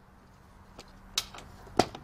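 Hands taking hold of the metal case of a Hickok Model 217 semiconductor analyzer on a stainless steel table: a couple of short knocks about half a second apart, the second louder, over a faint steady hum.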